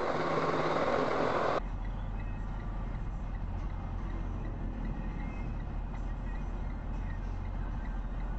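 Loud wind and road hiss on a dashcam, cut off suddenly about a second and a half in, then the steady low drone of a truck's engine heard from inside the cab while driving.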